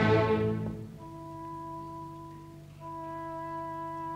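Opera orchestra: a loud passage dies away about a second in, leaving a quiet held chord that is sounded again just before three seconds.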